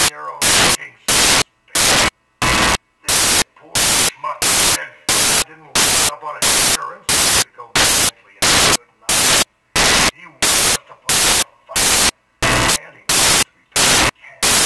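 Loud bursts of static hiss, each about a quarter second long, repeating evenly about twice a second and chopping up fragments of a man's speech between them.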